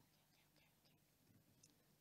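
Near silence: faint room tone with a low steady hum and a few tiny soft ticks.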